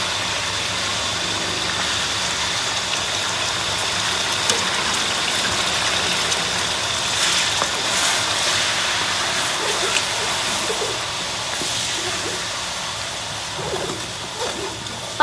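Garlic cloves and ground spices frying in hot oil in a large aluminium pot, a steady sizzling hiss, with a few light knocks of a wooden spoon as the spices are stirred in.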